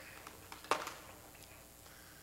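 Handling noise from a container being lifted from behind a wooden pulpit: a couple of faint clicks, then one short knock a little under a second in, over quiet room tone.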